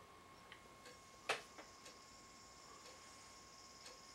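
Quiet room with an analog wall clock ticking faintly about once a second, one louder sharp click about a second in, and a faint steady high-pitched whine underneath.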